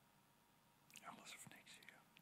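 Near silence, with a faint whisper from a person lasting about a second, starting about a second in.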